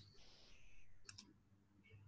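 Near silence: faint room tone, with a quick pair of faint clicks about a second in.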